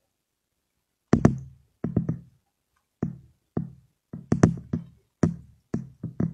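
A series of sharp, loud knocks or thumps, about a dozen, irregularly spaced and starting about a second in.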